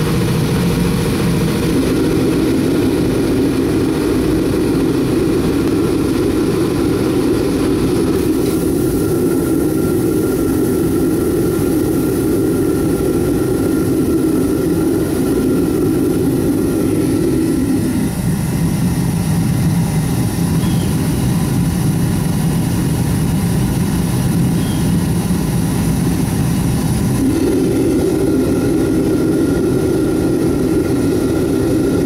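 Oil-fired metal-melting furnace burning diesel-type fuel, its burner running with a loud, steady roar. About halfway through, the roar drops lower in tone for roughly nine seconds, then returns.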